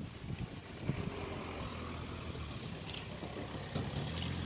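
A motor vehicle's engine idling steadily, with a few faint knocks over it.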